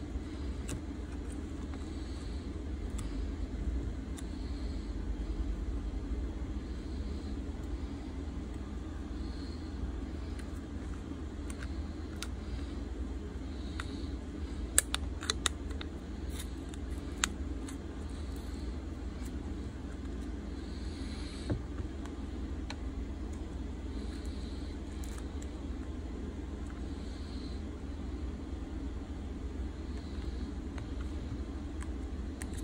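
Steady low background rumble, with a few sharp light clicks about halfway through and one more a few seconds later: a thin metal blade and plastic pick tapping against the phone's glass back while the adhesive is pried apart.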